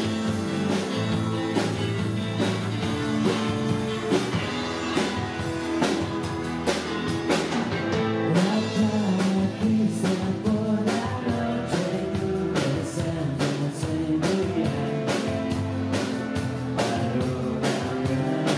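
A rock band playing live: electric guitars, bass and drum kit keeping a steady beat, with a sung vocal over it.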